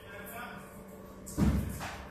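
One heavy thud about one and a half seconds in, deep and short, fading quickly.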